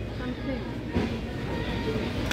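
Supermarket background: a steady low rumble with faint voices of shoppers in the distance.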